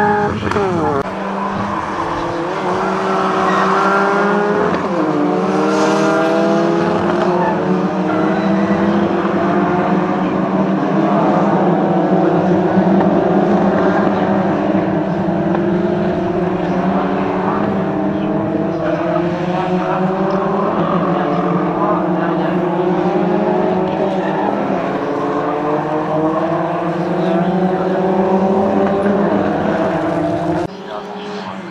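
A pack of Peugeot 208 race cars driving past on a circuit, several engines overlapping, each rising in pitch under acceleration and dropping back at gear changes.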